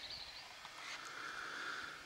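Faint outdoor ambience with no distinct event.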